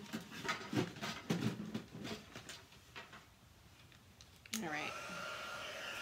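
Embossing heat tool switched on with a click about four and a half seconds in, then running steadily: a fan whir with a high whine that rises briefly as it spins up and then holds.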